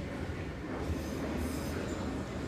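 Eizan Electric Railway 900-series 'Kirara' observation train approaching the platform: a steady low rumble of wheels and running gear, with a faint high wheel squeal coming in near the end.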